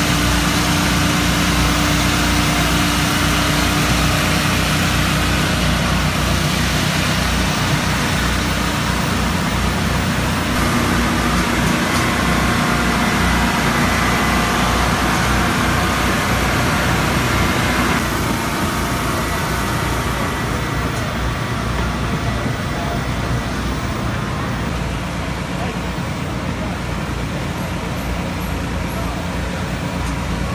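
Steady mechanical din of a busy race-car garage area, with voices in the background; it drops a little in level about two-thirds of the way through.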